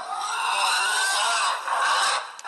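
A pig squealing: one long, high squeal that fills most of the two seconds.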